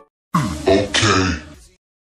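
A short human vocal sound, like a man clearing his throat or grunting, lasting just over a second and fading out, between silences.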